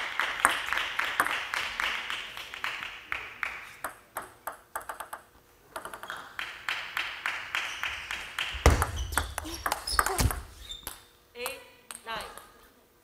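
Celluloid-type table tennis ball bouncing in quick repeated pings, several a second, pausing briefly around the middle. A couple of dull thumps come about nine and ten seconds in.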